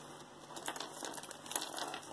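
Jewelry being handled on a wooden tabletop: faint rustling with a few small clicks and clinks of metal chains and pendants as a piece is picked up.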